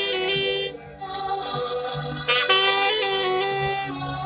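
Alto saxophone playing a slow melody in long held notes, with a brief pause a little under a second in before the line resumes.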